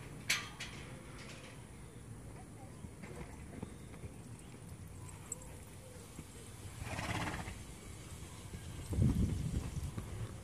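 A young horse moving around a handler on a lunge line in a sand pen: hooves on the sand, a sharp click just after the start, a short breathy sound about seven seconds in, and heavier low thuds near the end.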